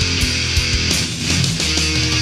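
Thrash/death metal recording: distorted electric guitars and bass holding low notes over steady drum hits.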